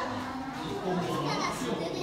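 Indistinct chatter of visitors' voices, children's among them, with no clear words.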